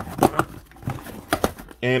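Cardboard shipping box being torn open by hand: the packing tape rips and the flaps are pulled back, in several short scrapes and tears.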